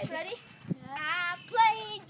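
A child's voice singing a high, wavering note without words, then a second held note near the end, with a short thump about a third of the way in.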